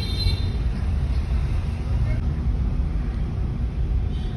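Steady low rumble of a Hyundai i20's engine and tyres on the road, heard from inside the cabin while driving.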